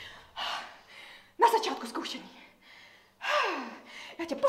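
A woman's vocal outbursts without clear words. A quick breathy gasp comes first, then a short voiced exclamation, then a final one that slides steeply down in pitch.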